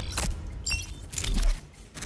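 An edited sound-effect sting: a rapid run of metallic jangling, scraping clicks and low thuds, with a few brief high tones midway.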